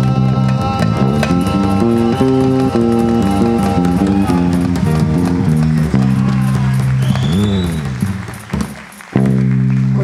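Live samba band with bass guitar and guitars playing a stepping run of low notes as the song winds down, with a bending note about seven and a half seconds in. The music drops away briefly and comes back with one loud held chord near the end.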